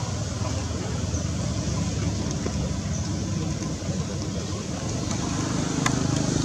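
Steady low rumbling background noise with a hiss over it, with a few faint clicks near the end.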